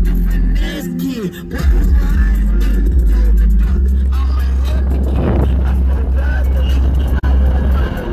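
Music with a heavy, steady bass playing loudly inside a car, with voices over it.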